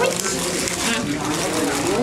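Paper food wrapper and paper bag crinkling and rustling as food is unwrapped at the table.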